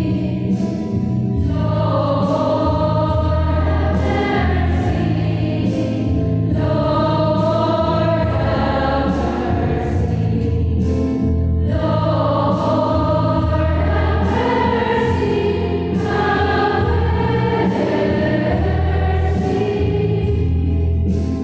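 Church choir singing a hymn in phrases of about five seconds, over held low accompanying notes.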